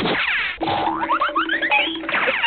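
Comedy sound effects over music: a quick falling sweep, then a run of short rising whistle-like glides over a repeated low tone.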